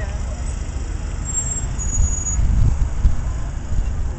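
Wind buffeting the microphone: an irregular low rumble that swells and gusts, with faint voices in the background.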